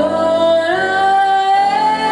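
Live jazz-soul band: a woman singing long held notes, her line stepping up in pitch about two-thirds of a second in, over electric guitar and electric bass.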